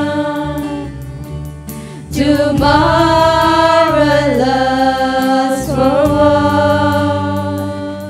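Live worship song sung by a group of female singers in long held notes, backed by electric bass and acoustic guitar. The voices swell louder about two seconds in.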